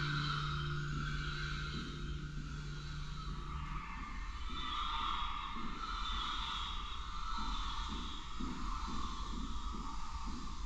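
Ambient electronic soundscape: a steady low drone that drops out about four seconds in, over hazy, sustained high tones and a low rumble.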